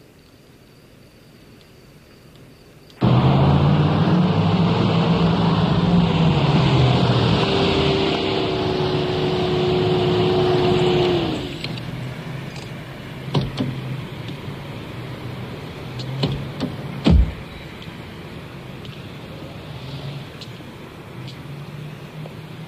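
Engine of a red open-top car running loudly, its note rising and falling as it drives, then dropping to a low steady idle about halfway through as the car pulls up. A few knocks follow near the end, the loudest a sharp thump late on.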